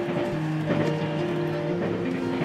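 Soft background music with held notes, over the steady running noise of a train heard from inside the carriage.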